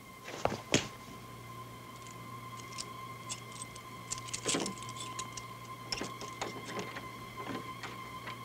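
Foley-performed door-lock sounds: two sharp knocks about half a second in, then a run of small metallic clicks and rattles as the lock and handle are worked. A steady high hum runs underneath.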